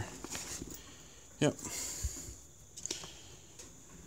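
A hand rummaging inside a fabric tool bag, feeling for a loose driver bit. There is faint rustling and a few small clicks.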